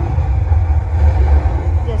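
Loud, steady deep bass rumble with faint voices above it: a film's soundtrack played through LG XBOOM party speakers.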